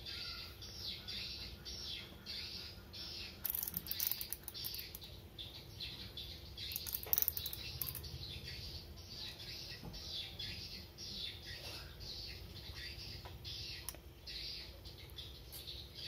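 Small birds chirping in the background, short falling chirps a few times a second all through, with a few brief crackles about four and seven seconds in.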